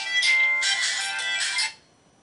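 Mobile phone ringtone playing a melodic tune, cut off suddenly about one and a half seconds in when the call is answered.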